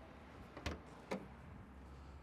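Two short clicks about half a second apart as the trunk of a 2013 Chrysler 300S is released and its lid swings up.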